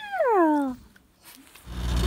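A small dog whines once: a single drawn-out cry that falls steeply in pitch and lasts under a second. Near the end a steady low rumble of street noise begins.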